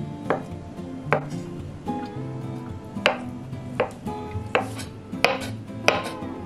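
Kitchen knife chopping hard-boiled eggs on a wooden cutting board: about seven sharp knocks of the blade striking the board, spaced unevenly. Soft background music plays underneath.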